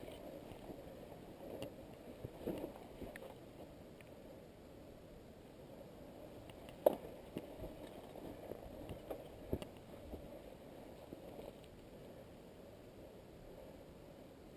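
Mountain bike rolling through a grassy meadow track: a steady low swish of tyres through grass, broken by scattered knocks and rattles from the bike over bumps, the sharpest about seven seconds in.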